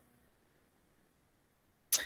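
Near silence in a pause between a man's sentences in an online lecture, with a brief short sound near the end just before he speaks again.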